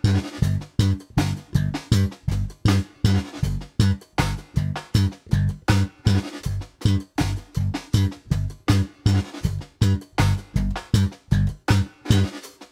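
Electric bass guitar played slap style in a funk groove: thumb slaps and finger plucks in a paradiddle pattern (thumb, pluck, thumb, thumb, pluck, thumb, pluck, pluck). Short, punchy notes come several times a second in a steady repeating rhythm.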